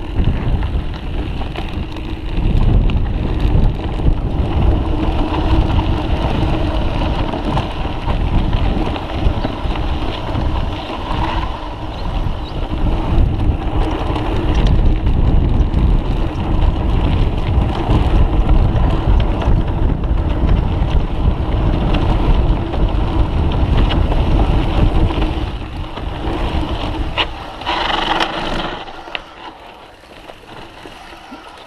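Mountain bike descending a rough trail at speed: wind buffeting the microphone with the rattle and bumps of the bike over the terrain, loud and uneven. A brief higher-pitched sound comes near the end, then the noise drops off.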